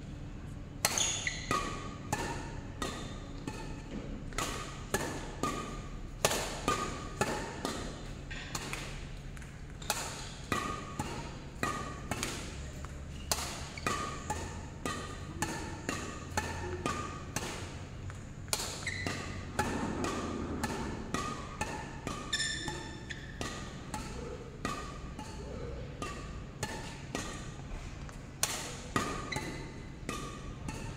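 Badminton rackets striking a shuttlecock in a steady back-and-forth rally: sharp string pings about one and a half a second, alternately louder and fainter as the near and far players hit. A low steady hum runs underneath.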